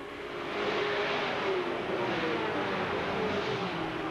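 A pack of dirt-track Sportsman stock cars racing under power through a corner, several engines running hard at once. The sound grows louder over the first second, then holds.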